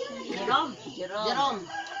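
A rooster crowing: one drawn-out call that rises and falls in pitch over about a second.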